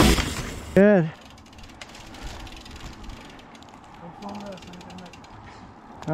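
Mountain bike freewheel hub ratcheting faintly as the bike coasts, a quiet rapid clicking. It is preceded by the end of a rock music track and a brief shout about a second in, which is the loudest sound.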